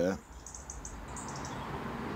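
Steady background noise with a quick run of high, short chirps from a small bird, starting about half a second in and lasting about a second.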